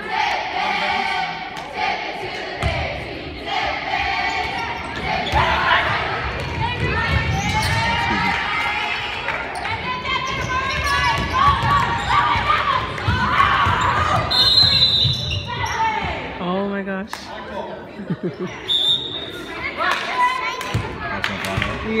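Basketball game: a ball bouncing on a hardwood court, with players' and spectators' voices and calls echoing in a gym. A couple of brief high-pitched squeals or tones cut through later on.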